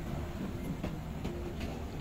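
Low, steady background rumble with a faint hum in a short pause in the speech.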